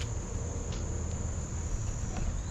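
Steady, high-pitched drone of a chorus of summer insects, with a low rumble underneath.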